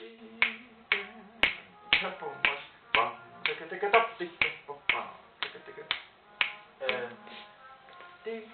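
A steady beat of sharp clicks, about two a second, keeping an even tempo, with a voice sounding softly between the clicks.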